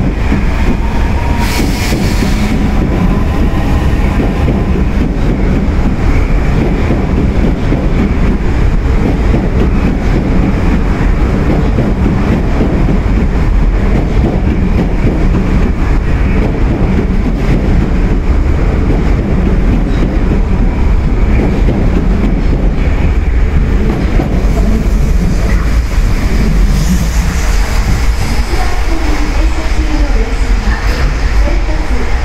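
Osaka Metro 30000 series subway train pulling out past the platform: a loud, steady running rumble of its wheels on the rails.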